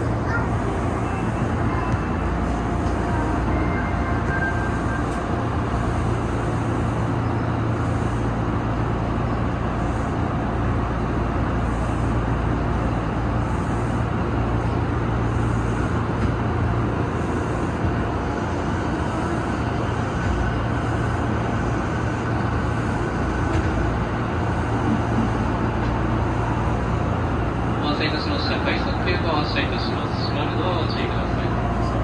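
Steady low hum and background noise inside the driver's cab of an Odakyu 8000 series electric train standing at a platform, while the train alongside pulls out. A quick run of high ticks comes near the end.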